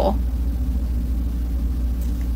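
A steady low hum, with the tail of a spoken word at the very start.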